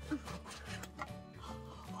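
Quiet background music.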